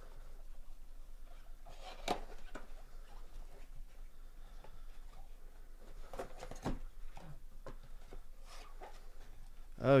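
A cardboard trading-card box being handled and opened by gloved hands: soft scrapes and rustling, with a sharp crackle about two seconds in and a few more snaps and scrapes around six to seven seconds in as the lid comes open and the contents are pulled out.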